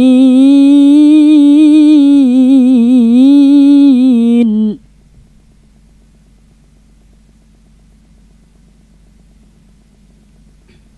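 A boy's voice in melodic Quranic recitation (tilawah), holding the long closing note of a verse with wavering ornaments around one pitch. It breaks off sharply about halfway through as the verse ends.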